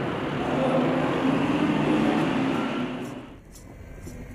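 Busy city street ambience: a steady rush of traffic noise, which cuts off suddenly a little over three seconds in.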